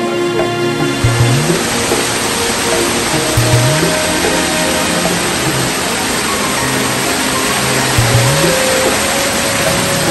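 Waterfall rushing, a steady loud hiss that swells in about a second in, under background music with a repeating bass figure.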